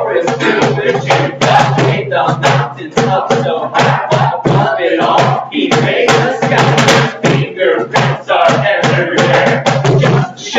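Acoustic guitar strummed over a steady hand-played cajon beat, with voices singing a lively camp song.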